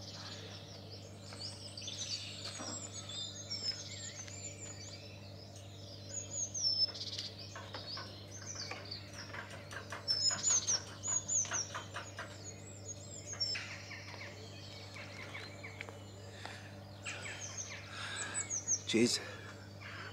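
Small songbirds singing in several bursts of quick, high, falling chirps, with pauses between phrases. A steady low hum lies underneath.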